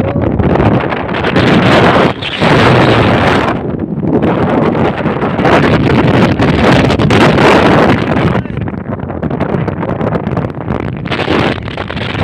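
Wind buffeting the phone's microphone, a loud rushing noise that surges and eases in gusts and dies down somewhat in the last few seconds.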